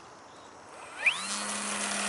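Electric motor and propeller of a radio-controlled P-51 Mustang model spooling up as the throttle is opened for takeoff: a whine rising steeply in pitch about a second in, then a steady high-pitched drone at full power.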